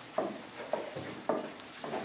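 Footsteps going down stairs: four even steps, about two a second.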